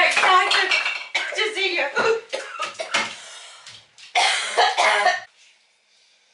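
Several people's voices with no clear words, excited exclaiming with a cough-like burst, stopping about five seconds in.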